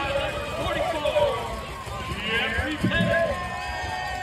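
Several voices of football players and spectators talking and shouting over one another, with a few low thuds underneath.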